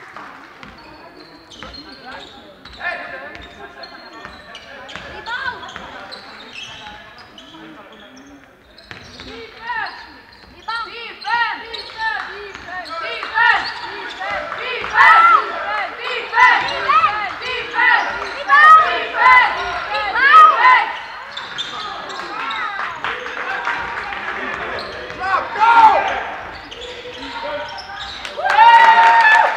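A basketball being dribbled on a sports-hall floor, with the short squeaks of players' shoes on the floor that get much busier from about ten seconds in, as the play around the basket picks up.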